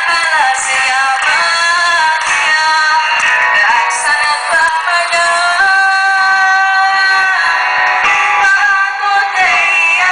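A woman singing a Greek song into a microphone with live band accompaniment. About halfway through she holds one long, steady note.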